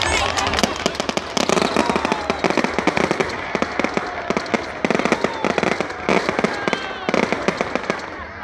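Fireworks going off in rapid, crackling volleys of sharp pops, thickening into denser clusters every second or two.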